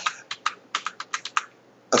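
Computer keyboard keys pressed in quick succession, about ten sharp clicks, paging back through presentation slides; the clicking stops about a second and a half in.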